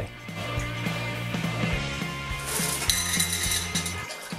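Live clams in their shells clinking and rattling against each other and a stainless steel mesh strainer as they are lifted and tipped, with a denser run of clattering clinks a little before the end. Background music plays underneath.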